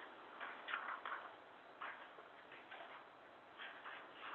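Faint, irregular small clicks and rustles, five or six of them spread unevenly over a low steady hiss of room tone.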